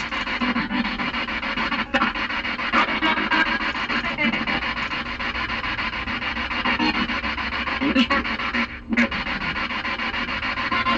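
Spirit box sweeping through radio frequencies: a continuous rasping static broken into choppy fragments, with brief dropouts about two seconds in and again near the nine-second mark.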